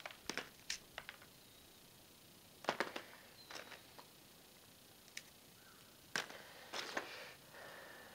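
Hands sifting through lumps of partly coked coal on paper: scattered faint clicks and clatters as the pieces knock together.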